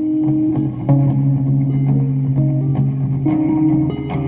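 Electric guitar playing held notes, the notes changing about a second in and again after three seconds.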